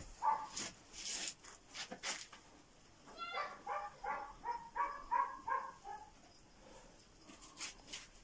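A dog barking, a quick run of about eight short barks starting about three seconds in, after a few light clicks.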